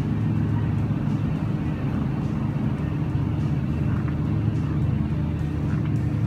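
Steady low machinery hum of a supermarket interior, holding one even pitch throughout.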